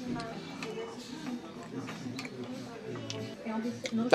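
Quiet background music with a faint murmur of voices, and a few light clicks of cutlery on a plate.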